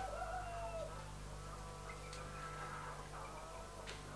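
Faint clucking of hens over a steady low hum.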